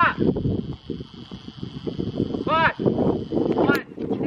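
A horse cantering on sand arena footing, its hoofbeats a run of dull, irregular thuds. A woman's voice calls out briefly at the start and twice more near the end.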